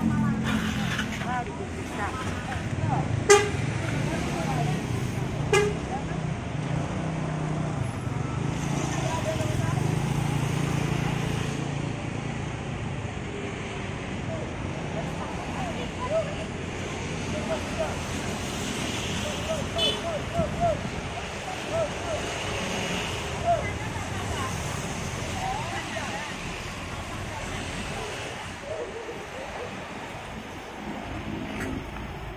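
A large diesel bus engine idling, strongest for the first dozen seconds and then fading, amid terminal voices. Two short sharp sounds stand out about three and five and a half seconds in.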